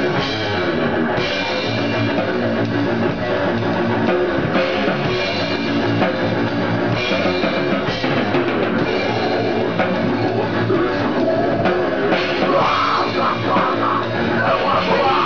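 A goregrind band playing fast and loud: a drum kit pounded hard on snare and cymbals under distorted guitar. The bright cymbal wash comes and goes every second or two.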